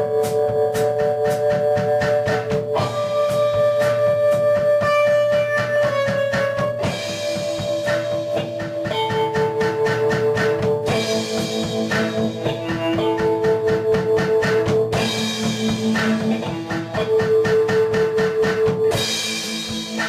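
A band playing live: held guitar chords that change every couple of seconds over a steady drum beat, with cymbal washes coming in from about seven seconds in.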